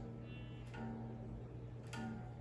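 Clean electric guitar through an amp: a single low string being tuned to D for drop D, ringing quietly, picked again about two-thirds of a second in and once more near the end.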